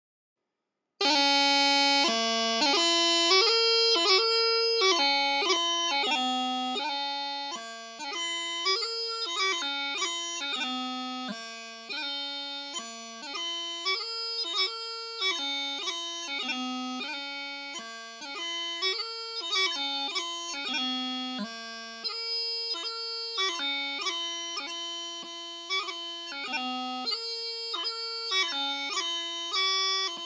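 Bagpipe practice chanter playing a strathspey tune: a single reedy melody line without drones, with quick grace notes cutting between the held notes. It starts about a second in.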